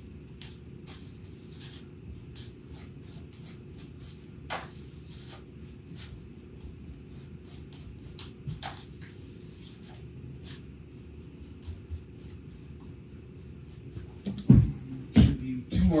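Polyester body filler (Bondo) being spread into a seam with a plastic spreader: short scraping strokes, about two a second. A few louder knocks come near the end.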